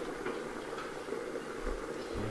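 A pot of rice in cuxá and water cooking on a gas stove, giving a steady low hiss.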